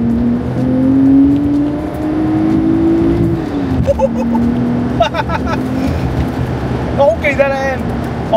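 A Toyota Mark II (JZX100) straight-six engine pulling under acceleration, heard from inside the cabin. Its note climbs steadily in pitch for about three seconds, then drops sharply and carries on at a lower pitch. Short spoken exclamations break in around the middle and near the end.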